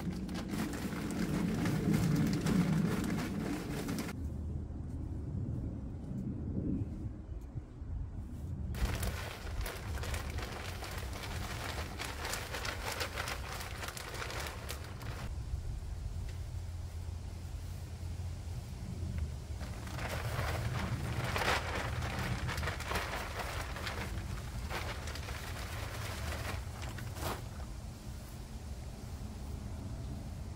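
Rustling and crinkling handling noise, irregular and on and off, as a bag of soil is handled and straw and soil are worked by hand around the base of potato plants in a straw-lined raised bed.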